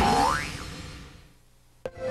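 A springy "boing" sound effect rising in pitch over the last chord of a commercial jingle, both fading away to near silence; a single sharp click near the end.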